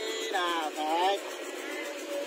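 People's voices speaking over a steady low drone, with a louder voice in the first half.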